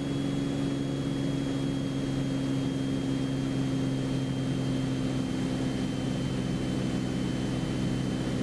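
Beechcraft Bonanza's six-cylinder piston engine and propeller droning steadily inside the cabin, set to about 2500 RPM. A faint, steady high-pitched whine sits above the drone.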